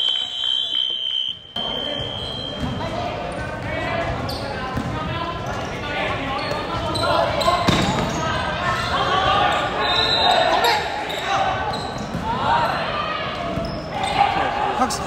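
Basketball game in a large, echoing indoor hall: a ball bouncing on the court, with players' voices calling out. A steady high tone sounds for about the first second and a half.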